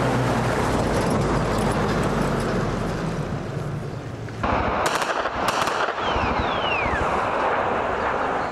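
Ford pickup truck engine running as it drives up. Then, after a sudden change in sound, two quick pairs of sharp cracks of gunfire come about half a second apart, followed by two short falling whistles.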